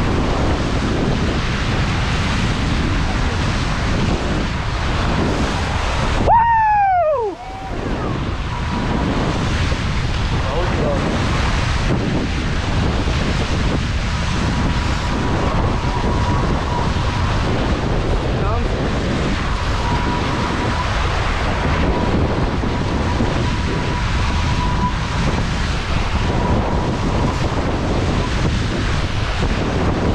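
Wind buffeting the microphone over the rush of water along the hulls of an F18 catamaran sailing fast downwind at about 12 knots, steady throughout. About six seconds in there is a short falling whistle, and a faint steady high tone comes and goes.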